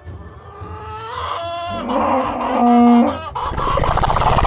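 Animal calls, cluck- and crow-like: a rising call in the first second or so, then a loud held call about three seconds in, followed by a noisy burst near the end.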